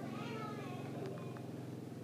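A short wavering pitched call in the first half second and a brief tone about a second in, over a steady low hum.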